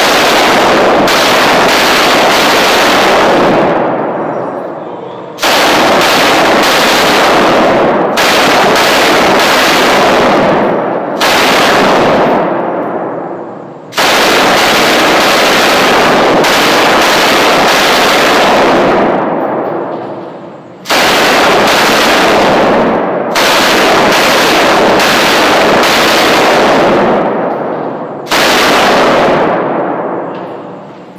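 Belt-fed machine gun firing long fully automatic bursts, about eight of them, each lasting two to five seconds with brief pauses between. Each burst trails off in echo off the concrete walls of an indoor range.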